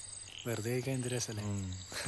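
A man speaks briefly in a low voice over crickets chirping steadily in the background.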